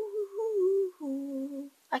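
A girl humming a tune: one note held for about a second, then a lower note held briefly.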